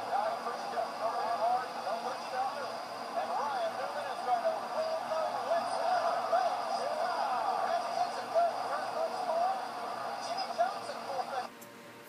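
Race footage playing through a television speaker: a steady mix of race-car engines and crowd noise, with many overlapping voices and no clear words.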